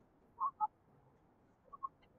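Faint, muffled snatches of an AI-cloned voice preview playing from the computer's speakers and caught by the microphone: a couple of brief blips about half a second in and again near the end, with little else heard between them.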